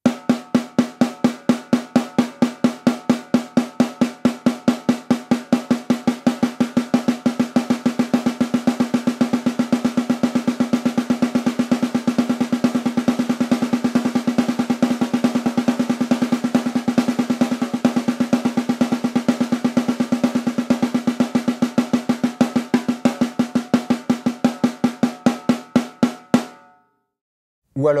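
Snare drum played with sticks in a fast, steady run of single strokes, a louder stroke recurring at regular intervals. The sticking is right, left, left, left, an exercise for building up the weaker left hand for blast beats. The playing stops shortly before the end.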